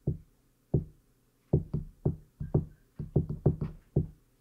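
Microphone handling noise: a run of short knocks and thumps on a handheld microphone. They come singly at first, then several a second in the second half.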